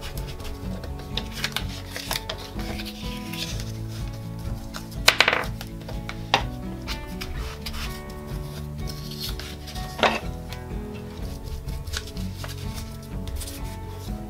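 Soft background music, over the scuffing and dabbing of a foam ink-blending tool rubbed on a paper tag to apply Distress ink, with a couple of sharper taps about five and ten seconds in.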